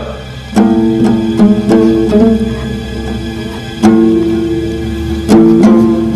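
Background music: slow, single plucked-string notes that each ring and fade, the strongest struck about half a second, four seconds and five and a half seconds in, over a low sustained hum.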